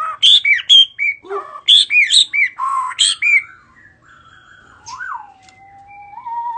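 Shama singing loudly: a quick run of varied, arching whistled notes for the first three and a half seconds, then a quieter stretch ending in a long whistle that swoops up and then glides down.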